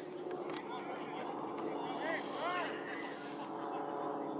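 Distant shouts and calls from players and spectators across a soccer field, with a few short calls rising and falling in pitch about two seconds in, over steady background noise.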